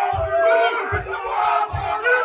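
Group of Māori men performing a haka: loud chanted shouts in unison over a beat of stamping feet, a deep thump about once a second.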